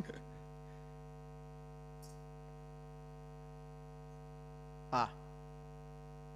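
Steady electrical mains hum in the microphone feed, a low buzz with many evenly spaced higher tones that does not change. A brief laugh at the very start and a short vocal sound about five seconds in break through it.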